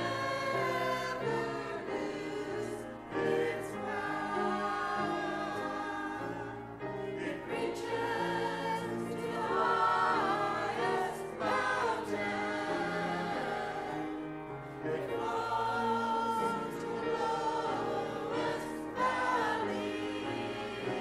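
Small mixed choir of women and men singing a sacred song in held, sustained notes.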